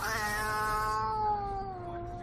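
Tabby cat giving one long, drawn-out yowl with a slowly falling pitch, the upset, defensive warning of a cat confronted by a dog.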